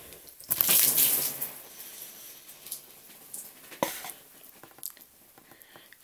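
A cup of water poured over a person's head, splashing onto a cloth hoodie for about a second, followed by a few faint ticks and drips.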